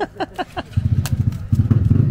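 A motorcycle engine comes in about a third of the way through, running with a low, fast throbbing, and gets louder from about halfway.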